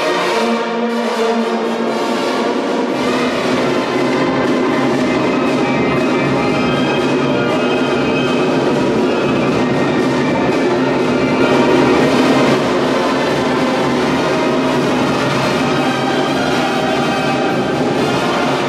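Brass band music with trombones, trumpets and percussion playing steadily; a deep bass part comes in about three seconds in.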